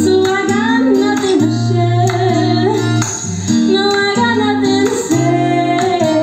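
A woman singing a slow pop ballad into a microphone, her voice gliding between held notes over an instrumental accompaniment of sustained low chords.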